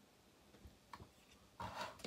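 Near silence with a few faint clicks and rubbing as hands handle small electronic parts on a tabletop, then a short, louder rustle near the end.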